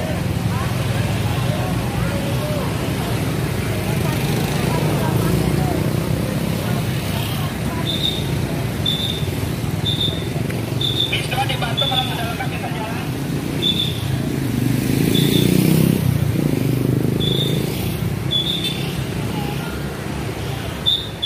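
Large diesel tour buses idling with a steady low rumble, amid street traffic and people talking. From partway through, a short high beep repeats about once a second.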